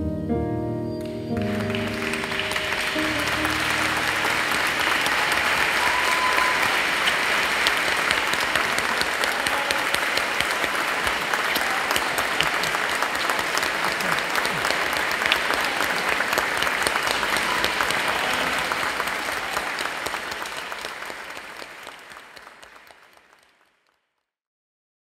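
Audience applauding in a theatre, a dense steady clapping that takes over from the last notes of music about a second in and fades out near the end.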